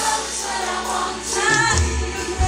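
A large mass gospel choir singing live, backed by a band, with strong low beats in the second half.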